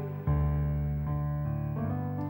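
Electronic stage keyboard playing sustained piano-voiced chords: a new chord is struck about a quarter second in and held, and the chord changes again shortly before the end.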